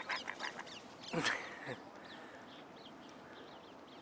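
Ducks quacking in short calls at the start, then faint, high, repeated chirps of small birds in the second half.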